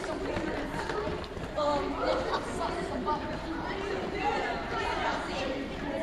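Overlapping chatter of many children's voices, with the footfalls of kids jogging on a wooden gym floor.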